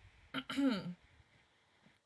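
A woman clearing her throat once, about half a second in, a short click followed by a brief voiced sound that falls in pitch.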